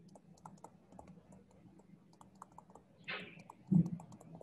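Light, irregular clicks and taps of a stylus writing on a tablet screen. A short hiss comes about three seconds in, and a soft low thump, the loudest sound, comes just before the end.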